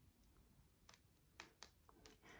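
A small fine-silver pendant, fired from silver clay, gently tapped: about four faint, light clicks in the second half. Its metallic sound shows that the clay has turned to solid silver.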